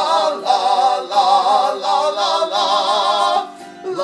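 A man's voice layered in two sung parts, singing a wordless 'la la la' melody with vibrato over strummed autoharp chords. The sound dips briefly near the end before the singing picks up again.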